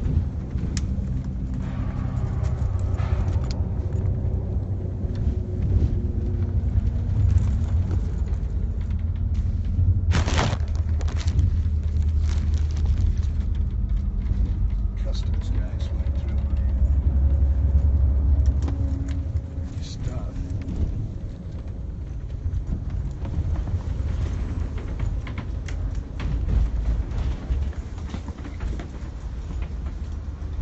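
Steady low rumble of a moving vehicle heard from inside, with knocks and rustles from a phone being handled and carried; a sharp knock comes about ten seconds in, and the rumble eases a little after about twenty seconds.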